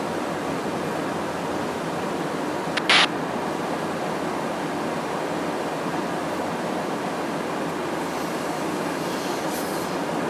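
Steady rushing of airflow and engine noise inside a Boeing KC-135R tanker in flight, even and unchanging. A short, loud crackle of hiss cuts in briefly about three seconds in.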